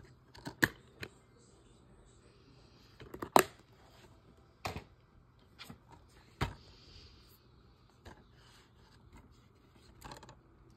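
Plastic DVD cases clacking and tapping as they are handled and swapped. There are about seven sharp clicks spread out with gaps between them, the loudest about three and a half seconds in.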